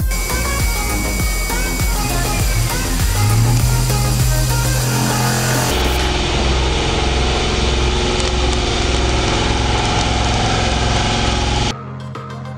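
CNC milling machine running, its end mill cutting an aluminium plate under a coolant spray, mixed with background music. The sound changes abruptly about halfway through and drops in level near the end.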